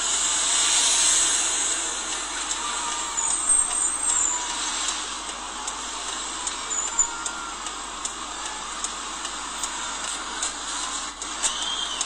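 Street traffic: trucks and cars passing, with steady engine and road noise and a louder hiss in the first two seconds.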